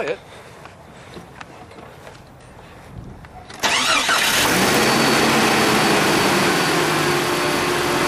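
A 1995 Jeep Cherokee's engine, heard from the open engine bay, starts about three and a half seconds in. It catches and settles into a steady idle.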